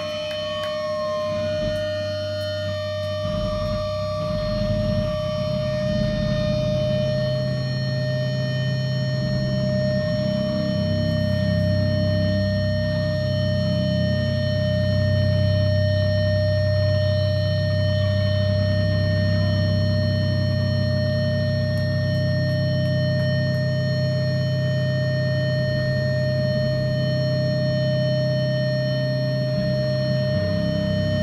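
Amplifier feedback and a distorted drone from a band's guitar rig: a steady high-pitched whine held over a low droning rumble whose notes shift slowly and swell louder partway through, with a wavering siren-like tone at the start.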